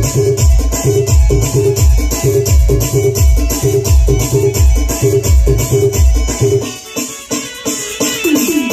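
Amplified live band music from electronic keyboards and drum pads: a heavy bass beat about twice a second under high ticking percussion and a keyboard melody. The bass beat drops out near the end, leaving the melody.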